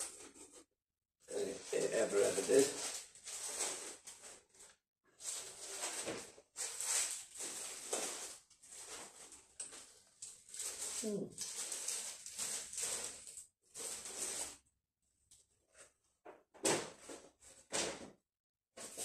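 A man's wordless murmurs and breathy noises in short bursts with pauses between them.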